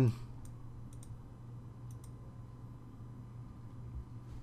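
A few faint computer mouse clicks, a close pair about a second in and another pair about two seconds in, over a steady low hum.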